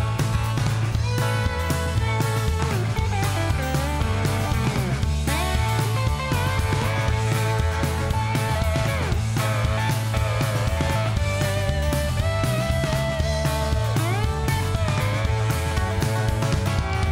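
Instrumental break of a live band: a lap steel guitar takes a solo of gliding slide notes over drum kit, bass and guitar, keeping a steady upbeat groove.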